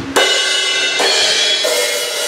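Zildjian A Custom cymbals struck three times with a drumstick, each hit left ringing with a bright, shimmering wash.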